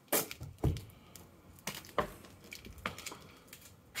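Painted wooden plank doors of a brick outbuilding being handled: a handful of short, sharp knocks and clicks as one door is pulled shut by its handle and the latch of the next is worked open. The two loudest come in the first second.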